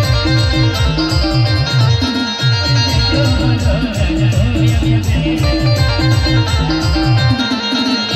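Live Timli dance music from a band played loud over a sound system, with a fast, steady drum beat at about four beats a second under a melodic lead.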